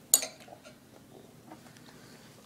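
A metal spoon clinks sharply against a ceramic bowl once, followed by a few faint taps.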